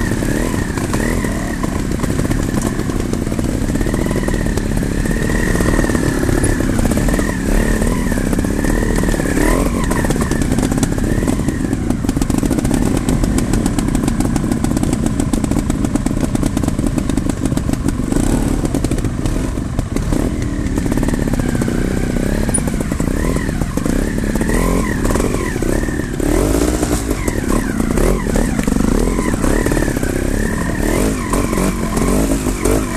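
Trials motorcycle engine running under load off-road, its pitch rising and falling constantly as the throttle is worked on and off over rough ground.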